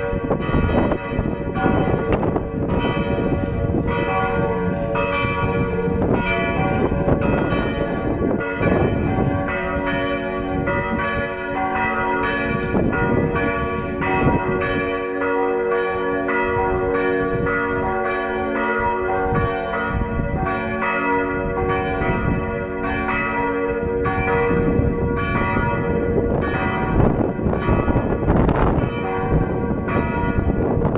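Felsenkirche church bells ringing a continuous peal: several bells struck over and over, their strokes overlapping several times a second.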